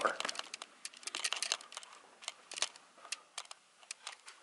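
An irregular run of small clicks and crackles: handling noise from a handheld camera being carried and gripped while walking.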